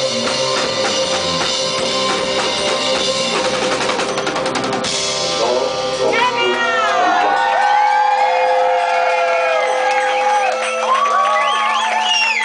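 Live band playing with a driving drum-kit beat; about five seconds in the drums stop, leaving a held drone under a wavering, gliding melodic line to the end.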